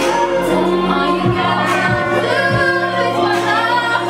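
A woman singing live into a handheld microphone over backing music with a bass line and a steady beat.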